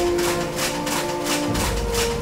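Newman energy machine running, a rapid even ticking of about five or six beats a second over a steady hum of several held tones.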